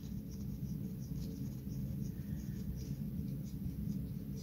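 Faint, irregular scratching and small ticks of fingers handling a small circuit board while screwing a small standoff into it by hand, over a steady low hum.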